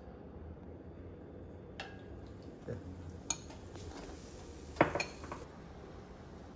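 A few sharp clinks of a utensil against a metal frying pan, the loudest near the end. A faint sizzle of a test drop of pancake batter frying in hot vegetable oil begins with the first clink and fades before the end.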